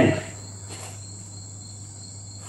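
A steady high-pitched whine with a low hum beneath, and a faint short stroke of a marker on a whiteboard about three quarters of a second in.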